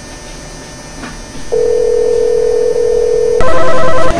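A steady telephone tone for about two seconds, as a call is placed from a mobile phone, then a telephone ringing loudly with a pulsing electronic ring that cuts in near the end.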